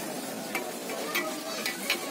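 Oil sizzling on a takoyaki griddle, a steady hiss with scattered light clicks and taps from about half a second in.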